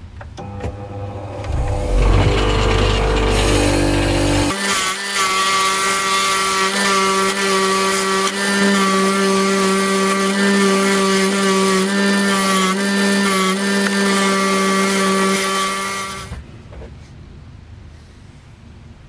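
Bench grinder with a wire wheel starting up, then running steadily with a hum and a high hiss as the steel blade of an antique billhook is held against the wire brush to strip rust. The sound drops off sharply about 16 seconds in.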